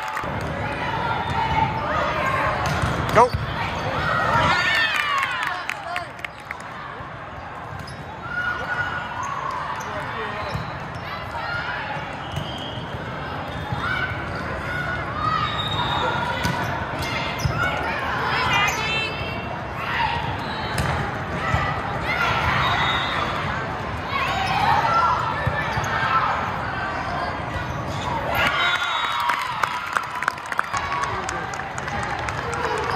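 Indoor volleyball play in a large hall: the ball being struck and hitting the floor in short sharp knocks, one sharp knock about three seconds in, over players' calls and spectators' chatter throughout.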